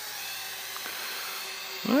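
Small folding toy quadcopter's motors and propellers whining steadily in flight. A voice starts right at the end.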